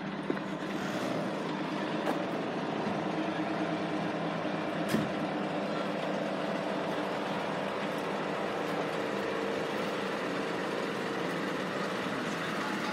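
Large vehicle engine idling steadily, with a single sharp knock about five seconds in.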